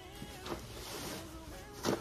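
Fabric rustling as a stuffed pillow insert is worked out of its cloth cover, with a small knock about half a second in and a louder brief knock near the end.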